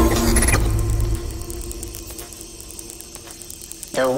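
Electronic sound design: a low rumble and a short burst of crackling noise that cut off about a second in, leaving a single steady held tone over faint rapid mechanical-sounding clicks.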